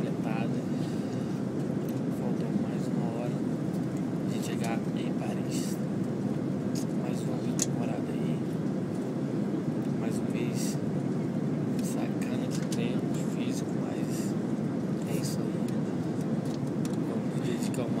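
Steady airliner cabin noise, an even rumble from the aircraft's engines and air system, with faint voices of people talking here and there.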